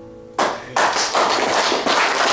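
The last chord of an acoustic guitar fades out, then about half a second in applause breaks out and carries on.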